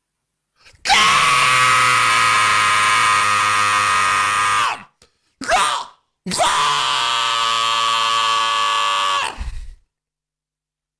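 A man screaming in rage: two long held screams, the first about four seconds and the second about three, with a short cry between them, each dropping in pitch as it ends.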